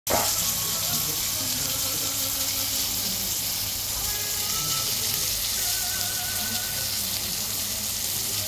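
Horse meat and potatoes sizzling on a hot cast-iron sizzler platter: a steady hiss.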